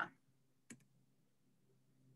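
Near silence, broken by one faint, short click about a third of the way in.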